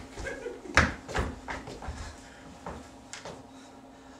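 Footsteps and a few knocks on a stage floor as a performer moves forward and drops to a crouch, the sharpest knock a little under a second in, then faint room hum.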